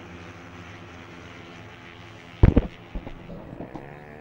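Four-stroke racing scooter engines running at speed in a steady drone. A loud sudden thump comes about two and a half seconds in and a smaller one half a second later, and engine pitch rises near the end.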